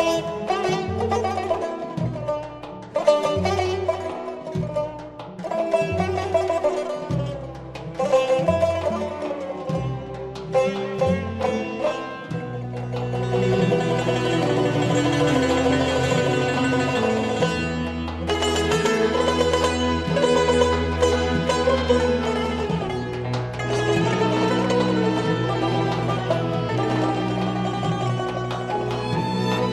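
Azerbaijani tar playing a plucked melody over instrumental accompaniment. In the first part the bass moves in separate notes about once a second; from about 12 seconds in the accompaniment changes to long held notes.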